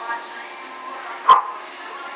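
A dog barks once, a single short, loud bark a little past halfway, over a steady background of voices.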